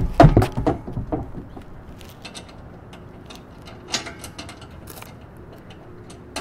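A metal antenna mast settles into its plastic base with a heavy thump and a couple of knocks. It is followed by scattered light clicks and taps as hands work at the fastenings inside the base.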